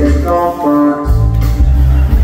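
Live rock band music: an electric guitar holding sustained notes over bass.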